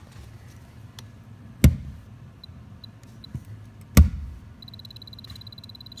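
Pin-type moisture meter driven into OSB wall sheathing: two sharp knocks about two seconds apart. Between them it gives three short high beeps, then from just after the second knock a steady high beep, its alarm reading for very wet wood.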